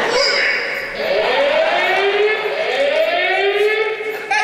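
Siren-like sound effect over the stage sound system: a pitched tone sweeping upward again and again, one sweep after another in quick succession, starting about a second in.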